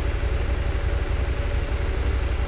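KTM 790 Adventure's parallel-twin engine idling steadily with the motorcycle at a standstill: a low, even pulsing rumble.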